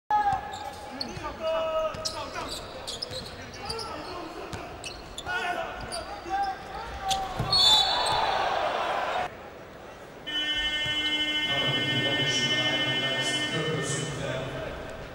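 Basketball game sound in an arena: the ball bouncing, short sneaker squeaks on the hardwood and shouts, with the crowd swelling loudly around a shot at the basket near the middle. About ten seconds in, a steady pitched tone sets in and holds to the end.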